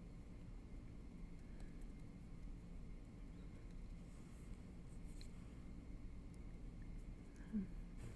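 Quiet room tone with faint soft rubbing and light tapping of fingertips blending liquid foundation into the skin of the face. A brief short vocal sound comes near the end.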